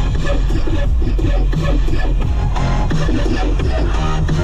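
Electronic background music with a steady beat and heavy bass.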